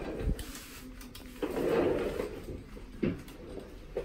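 Rustling of denim jeans being pulled up and rolled above the knees, with a few soft knocks of handling.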